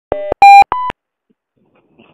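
Three short electronic telephone beeps, each about a fifth of a second, stepping up in pitch one after another, the middle one loudest. Silence follows.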